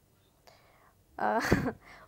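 A short pause holding only a soft breath, then a brief burst of a voice about a second and a half in.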